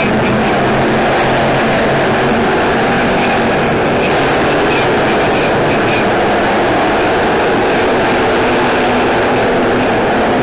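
A pack of street stock race cars' engines running together at racing speed on a dirt oval, a loud, steady, unbroken wall of engine noise.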